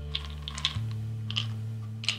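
Pills and a plastic prescription bottle clicking and rattling in the hand: a few short, sharp clicks, loudest about half a second and a second and a half in. Under them is a low, sustained musical drone whose chord shifts partway through.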